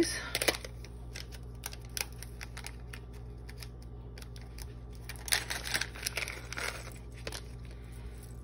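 Small plastic packet handled and pulled open by hand, crinkling in short bursts, the loudest about five to seven seconds in, with scattered light clicks.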